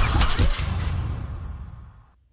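Title-sequence sound design: a deep, noisy swell with a few sharp hits in the first half second, dying away steadily over the second half to near silence.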